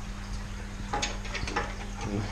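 A few light clicks and a brief clatter of a steel ruler and metal square being shifted against aquarium glass, about a second in, over a steady low hum.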